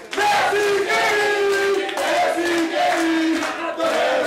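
A group of men chanting loudly together in drawn-out sung notes that change pitch every half second or so, like a supporters' chant.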